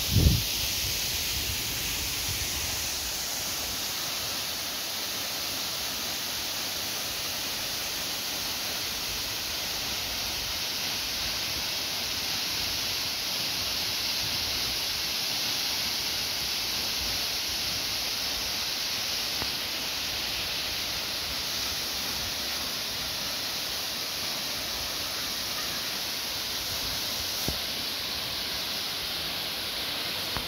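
Steady rushing of Nan'an Waterfall, a cascade about 50 m high, falling onto rock and into its pool. There is a brief low thump right at the start.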